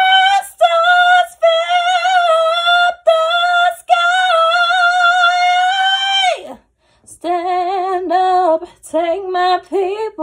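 A woman singing solo and unaccompanied, a soulful ballad line. She holds a long high note with vibrato, breaks off briefly, then sings shorter phrases about an octave lower.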